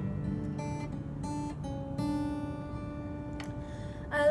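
Taylor acoustic guitar playing an instrumental passage: chords struck every second or so and left to ring.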